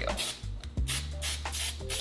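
Aerosol cooking spray hissing in a few short bursts as it coats a parchment-lined cake pan, over background music.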